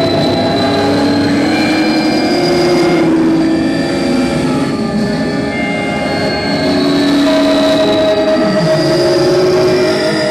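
Live experimental electronic music: a loud, dense drone of many overlapping held tones over a noisy bed, with a few pitches sliding slowly and one falling low near the end.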